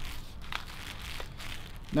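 Gloved hands rubbing and smoothing a wet resin casting sock over a foot, a soft, steady rustling with crinkling of the plastic sheeting under the foot.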